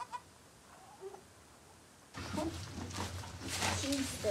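Wood-shaving bedding rustling and crackling as a goat doe and her newborn kids shift in it. It starts suddenly about halfway through, after a quiet first half.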